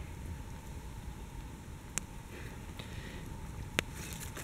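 Two sharp clicks, one about two seconds in and a louder one near the end, from a blackened camping pot handled by its clip-on metal gripper, over a faint steady low rumble of outdoor background.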